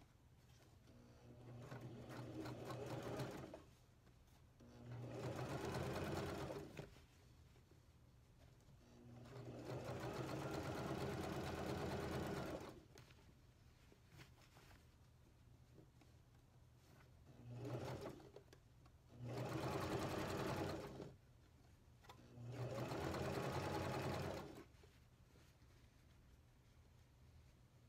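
Elna electric sewing machine stitching a pin tuck through denim, running in six bursts of one to three seconds with short quiet pauses between them.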